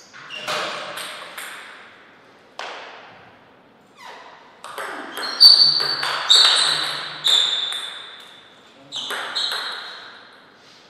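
Table tennis ball clicking off rubber paddles and the table: a few scattered bounces first, then a quick rally of sharp, ringing knocks in the middle, the loudest part, and two last bounces near the end.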